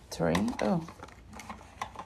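Light plastic clicks and rustles of hands handling a plastic Mini Brands surprise capsule and its paper label, after a brief spoken 'oh'.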